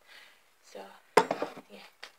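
A single sharp knock a little over a second in, after a woman briefly says "so yeah".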